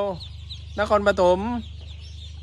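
Many Khaki Campbell ducklings peeping continuously as a high, busy chatter in the background.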